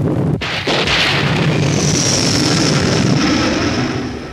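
A loud, rumbling thunderclap sound effect, with a second crash about half a second in, then a high whistle gliding slowly down in pitch from about two seconds in.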